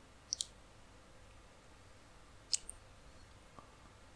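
Computer mouse button clicks: two quick pairs of light, sharp clicks, one near the start and one about two and a half seconds in, against quiet room tone.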